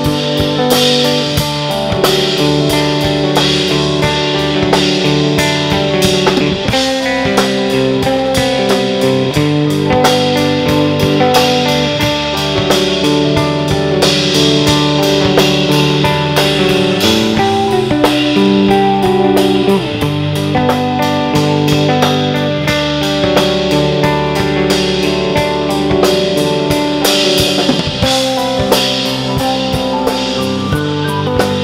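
Live rock band playing an instrumental passage: Korg keyboard chords, electric guitar, bass and drum kit, with held chords changing every second or two over a steady beat.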